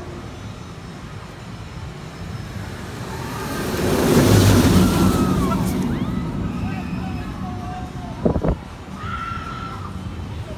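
Steel roller coaster train passing overhead: a rushing rumble swells to a peak about four seconds in, then fades. A sharp knock comes near the end.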